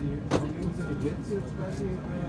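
Indistinct voices of people talking nearby over a steady low hum, with a sharp click right at the start and another about a third of a second in.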